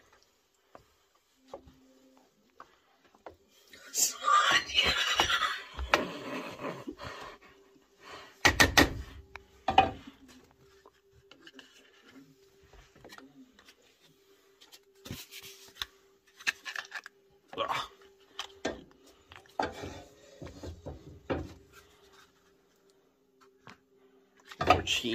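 Wooden spoon spreading thick cheese sauce in a metal baking pan: scattered scrapes and soft wet sounds, with a couple of sharp knocks against the pan about eight to ten seconds in. A noisy stretch around four to six seconds in, and a faint steady hum underneath.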